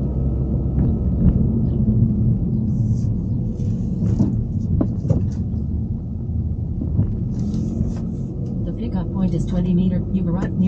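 Low rumble of a car on the move, heard from inside the cabin.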